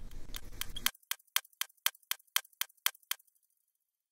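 A stopwatch ticking sound effect: sharp, even ticks about four a second, stopping about three seconds in. A brief hissing whoosh runs under the ticks in the first second.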